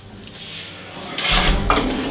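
A wooden or metal chair scraping across a hard floor as a man pushes back from a table and stands up, starting a little over a second in and ending with a short knock.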